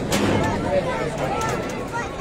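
A crowd of people talking and calling out over one another, with a short sharp click just at the start.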